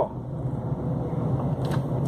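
Car running along a town street, heard from inside the cabin: a steady low hum of engine and tyres.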